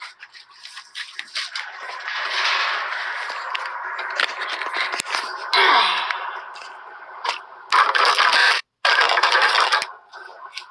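Loud rustling and scraping close to the microphone, like handling noise, with a brief dropout in the sound near the end.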